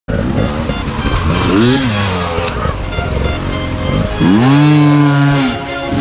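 Dirt bike engines revving over background music: one short rev rising and falling about a second and a half in, then a second rev from about four seconds in, held high for over a second before dropping away.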